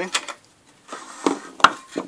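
Steel screwdriver tip clicking and scraping against the large retaining nut of a Shopsmith Mark V on/off switch as the nut is worked loose: a few sharp metal clicks with short scrapes between, the loudest about one and a half seconds in.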